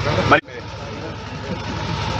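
Speech cuts off abruptly less than half a second in, leaving an engine running steadily at idle: a low, even hum with a hiss over it.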